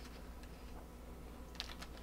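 Faint light clicks and paper handling from hands turning the last pages of a picture book, with a small cluster of clicks near the end.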